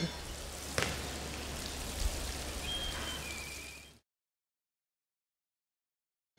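Water sprinkling from the rose of a plastic watering can onto a bare soil bed, an even rain-like hiss that cuts off suddenly about four seconds in.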